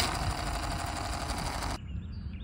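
Gearbox and propeller of a rubber-powered balsa model airplane whirring steadily as the wound rubber motor unwinds, stopping abruptly near the end.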